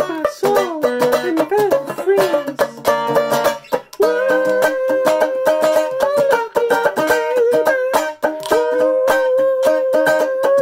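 Banjo strummed and picked steadily while a man sings along without clear words: his pitch slides up and down for the first few seconds, then he holds long notes over the picking.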